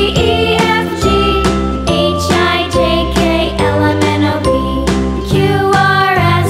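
Upbeat children's music: a bright, jingly melody over a steady beat.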